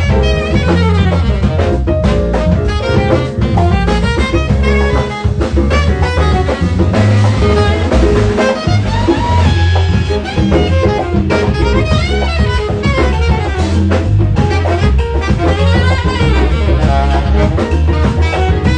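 Live jazz: a saxophone solos in fast, moving lines over a drum kit with cymbals and a low bass line, playing without a break.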